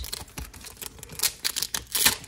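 Pokémon trading cards being handled and set down on a wooden table: a quick, irregular run of light clicks and taps.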